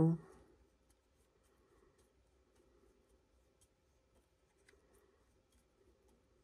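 Faint, scattered small ticks and creaks as the threaded steel shaft of a roll pin pusher tool is turned by hand, pressing the steel roll pin out of a push-pull backwash valve's T-handle. The end of a spoken word is heard at the very start.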